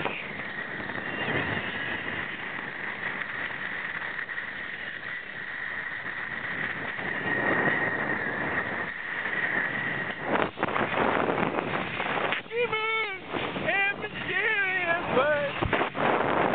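Water and wind rushing against a wakeboarder's camera, with a steady high whine and a boat running nearby. Late on, a person calls out in two bursts of high-pitched yells.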